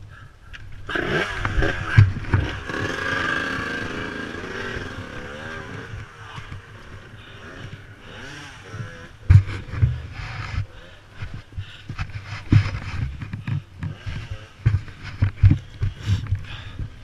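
Enduro dirt bike engine revving, its pitch rising and falling as it climbs a rocky trail. From about nine seconds in come repeated knocks and thumps as the bike bumps over rocks.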